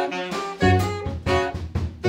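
Live jazz ensemble, several saxophones playing short, punchy chords together over low notes, with guitar and drums.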